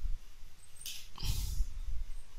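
Breath noises close to a microphone: a short sniff just before a second in, then a longer breath, over a low rumble.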